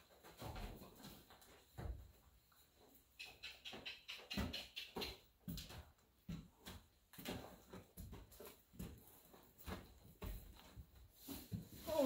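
A horse shifting and stepping about in a barn: irregular hoof thuds and knocks, a few of them heavier.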